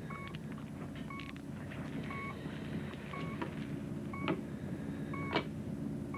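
Medical monitor beeping about once a second, a short electronic tone each time, over a steady low equipment hum. A couple of short clicks sound in the last two seconds.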